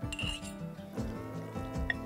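Background music with sustained notes, over a couple of light clinks of a metal fork against a small glass jar as shredded meat is packed into it.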